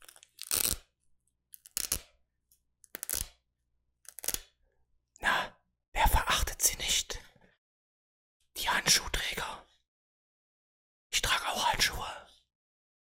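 Hook-and-loop (Velcro) wrist strap and leather of a black fingerless weightlifting glove being handled close to the microphone: about eight short rips and rustles, a second or so apart, the longest a little before the middle.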